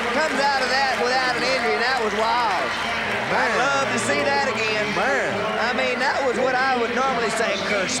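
Indistinct voices talking, with no words clear enough to make out.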